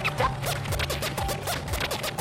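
Mahjong tiles clicking and scraping as they are drawn and discarded on the table, many quick irregular clicks, over background music.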